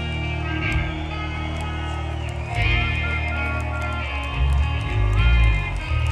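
Live rock band playing an instrumental passage: an electric guitar melody of held and bent notes over steady bass and drums, swelling louder in the second half.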